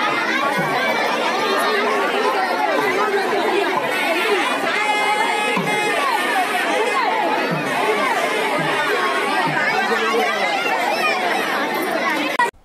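A large outdoor crowd: many voices talking and calling out at once in a steady, dense hubbub.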